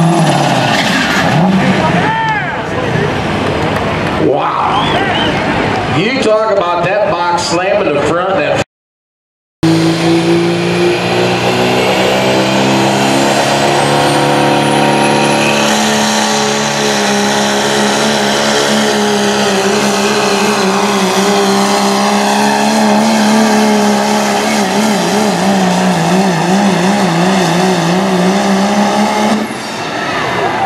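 Diesel pickup trucks at full throttle pulling a weight-transfer sled. In the first part one engine winds down at the end of its pull. After a break of about a second, a second truck's diesel rises in pitch as it takes off, holds at high revs with a wavering note as it digs in, and drops off near the end.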